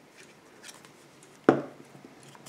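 Glue pen tip rubbing faintly on the back of a paper label, then one sharp knock about one and a half seconds in as the glue pen is set down upright on the wooden table.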